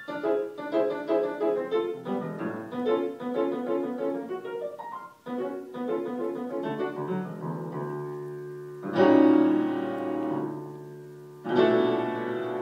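Grand piano played solo: quick, light runs of short notes, a brief break about five seconds in, then loud held chords over a low bass about nine seconds in and again near the end.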